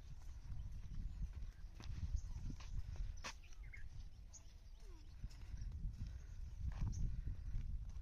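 Outdoor ambience dominated by a fluctuating low rumble of wind buffeting the microphone, with a few sharp clicks.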